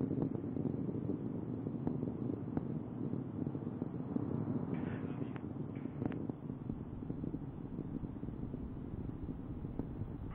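Steady low rumble with faint crackles, slowly fading: the distant roar of Space Shuttle Atlantis climbing on its three main engines and twin solid rocket boosters.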